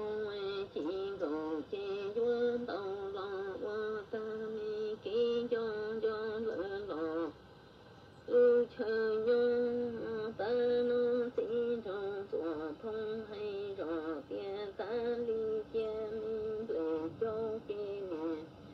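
A single voice singing Hmong kwv txhiaj, sung poetry in long held notes that waver and slide between pitches. It comes in two phrases, with a pause of about a second near the middle.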